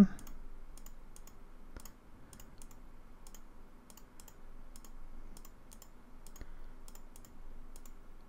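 Light, irregularly spaced clicks of a computer mouse, many of them, as nets are labelled in a CAD schematic, over a faint steady room hum.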